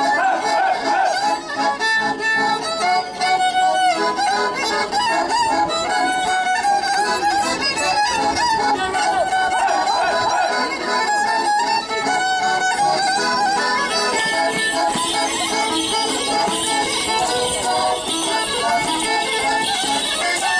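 Romanian Căluș folk dance tune led by a fiddle, playing a fast, ornamented melody without pause. In the second half a jingling rattle grows louder under the melody.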